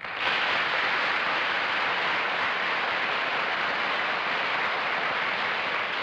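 Studio audience applauding, a steady, dense clapping that starts the moment the panelist's name is spoken.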